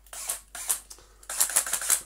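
Handling noise from the Henry HVR160 vacuum's motor head being seated on its plastic bucket and screws being picked up: short scraping, clicking rattles, a few early on and then a denser run over the second half.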